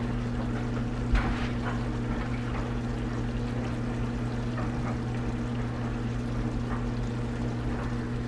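Creamy garlic sauce with linguine simmering in a cast iron skillet on low heat, with faint bubbling over a steady low hum, and a small tap about a second in.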